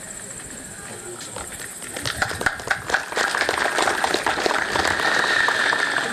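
Audience applause after a speech: a few scattered claps about a second in build into denser, steady clapping from a seated crowd.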